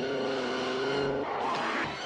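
Animated-film soundtrack: a steady held tone for about the first second, then a scraping, sliding sound effect as a man tumbles down a dirt slope.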